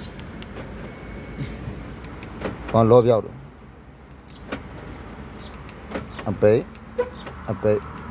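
A series of sharp clicks in a car cabin as the buttons of a duplicated Chevrolet flip-key remote are pressed to test it, over a steady low hum, with a few short bursts of a person's voice.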